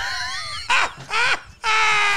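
Two men laughing hard in high-pitched, wavering bursts, ending in a long held cry.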